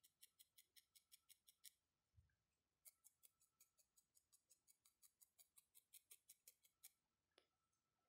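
Faint, rapid ticking of a felting needle stabbing into a small piece of wool, about six pokes a second, in two runs with a pause of about a second between them. This is dry needle felting: the wool is being firmed and rounded into shape.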